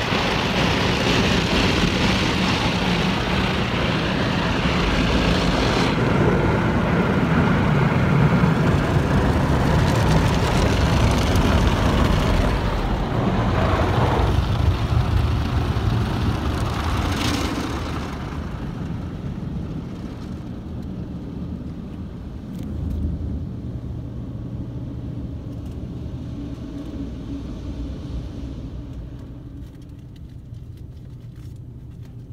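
Soft-touch brushes of a Mark VII ChoiceWash XT automatic car wash scrubbing the car under spraying water, heard from inside the cabin as a loud, steady wash. About two-thirds of the way through the noise falls away, leaving a quieter low hum.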